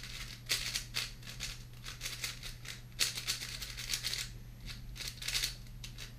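4x4 speedcube being turned quickly by hand: bursts of plastic clicking and rattling as the layers are spun, with a longer run of turns about halfway through and short pauses between bursts.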